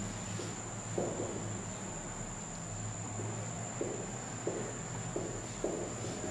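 Marker pen writing on a whiteboard: a run of short strokes as letters are drawn, over a steady high-pitched whine and a low hum.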